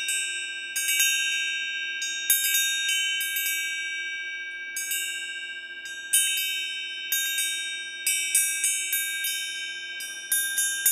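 Metal chimes struck at irregular intervals, each strike ringing on in long, high, overlapping tones; the strikes come faster near the end.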